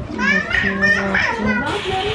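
Children's voices chattering and calling out in a crowded room, with music underneath. A steady hiss comes in near the end.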